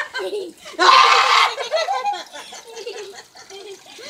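People talking and laughing, with a loud burst about a second in.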